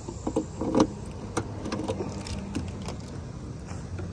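Key clicking and rattling in the trunk lock of a 2000 Chevrolet Impala as it goes in and turns to release the latch, a run of small metallic clicks mostly in the first second and a half. A low steady hum runs underneath.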